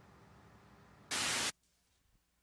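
A faint hiss, then about a second in a loud burst of static lasting about half a second that cuts off suddenly.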